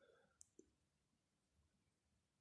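Near silence: room tone, with two brief faint clicks about half a second in.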